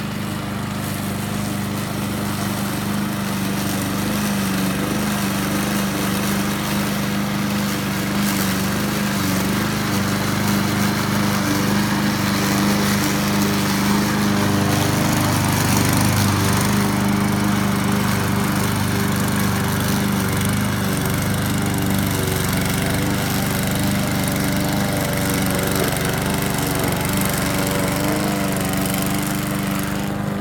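Walk-behind rotary lawn mower's 140cc Tillotson single-cylinder four-stroke engine running under load as its blade cuts tall, thick grass, holding a steady pitch without bogging down. It is loudest around the middle as the mower passes close.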